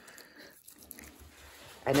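Faint scrubbing of a toothbrush on a dog's teeth, with small scratchy clicks. A man starts speaking near the end.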